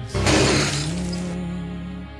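Glass shattering: a sudden loud crash a moment in, with a spray of breaking glass that dies away within about a second, over slow background music.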